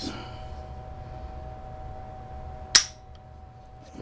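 AR-15 dry-fired: a single sharp click about two-thirds of the way in as the hammer drops on a trigger pull. The trigger's creep has been taken out by a newly fitted adjustable grip screw.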